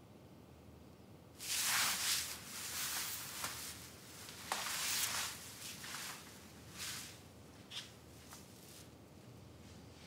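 Rustling of a long, heavy embroidered gown and soft footsteps as a woman walks across a room: a series of swishes starting about a second and a half in, dying away near the end with a couple of small clicks.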